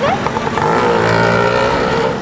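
A motor vehicle engine running steadily in street traffic.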